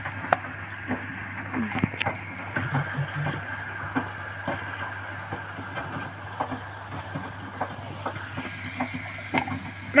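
Hotpoint Ariston front-loading washing machine with its drum turning slowly through a wash, water sloshing around a load of soft toys over a steady low hum, with scattered soft knocks as the drum turns.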